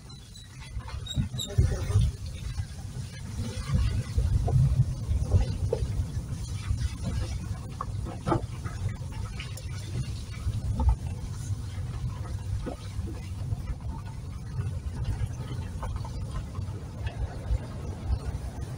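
Car cabin noise while driving slowly over a rough, muddy dirt road: a steady low rumble with irregular knocks and rattles as the car jolts over ruts, heaviest a few seconds in.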